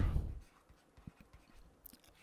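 Stylus ticking and scratching faintly on a writing tablet as a short word is handwritten: a few scattered light ticks, after the tail of a spoken word at the start.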